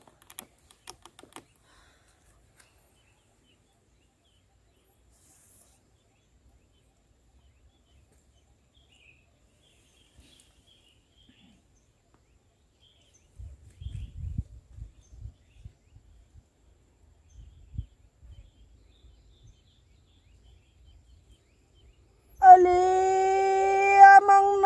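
Long near-quiet stretch with faint low rumbling in the middle. Near the end a woman's voice starts a chanted prayer, holding one long steady note.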